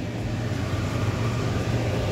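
A steady low hum with a faint even hiss underneath, unchanging throughout.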